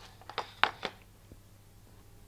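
Four short, light knocks and clicks within the first second, and a faint one a little later, as a thin wooden board is handled and set down, over a faint steady low hum.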